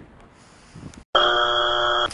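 Electronic buzzer sounding one loud steady tone for about a second. It cuts in suddenly, right after a brief dead silence about a second in.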